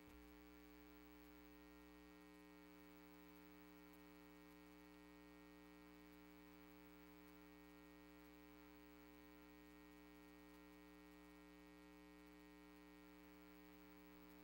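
Near silence: a faint, steady electrical mains hum.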